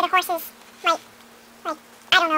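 A child's high-pitched voice making short squeaky vocal sounds without words: a quick few at the start, then single short calls about a second in and near the end, over a faint steady hum.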